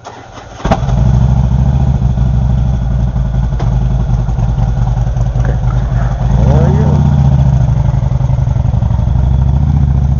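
Harley-Davidson V-twin motorcycle engine cranked and catching under a second in, then running with a steady pulsing beat; about six and a half seconds in it revs up as the bike pulls away.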